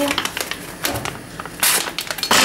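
Crackling and clicking of a paper sachet of gelling sugar being handled and opened, with one short, sharp rustle near the end.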